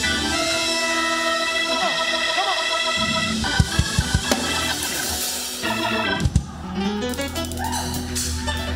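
Church organ playing sustained chords, with a few low thumps in the middle.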